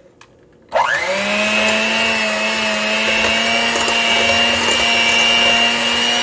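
Electric hand mixer starting under a second in, its whine rising quickly to speed, then running steadily as its twin beaters whisk a thick egg and Nutella mixture in a glass bowl.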